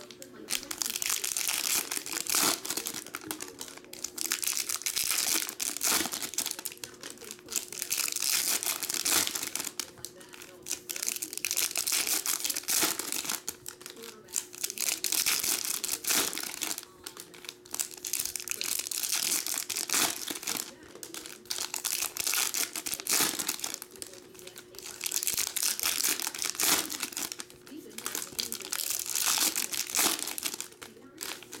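Foil trading-card pack wrappers being torn open and crinkled by hand, in repeated bouts of a few seconds each with short quieter gaps between. A faint steady hum runs underneath.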